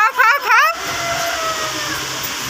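A high-pitched voice gives a few short, wavering squeals in the first part of a second, over the steady whirr of an electric pedestal fan.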